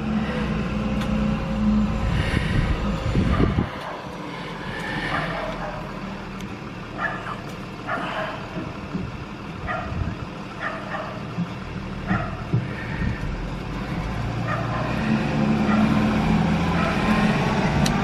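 School bus diesel engine running at the stop, a steady low rumble. Through the middle a dog barks repeatedly, about once a second.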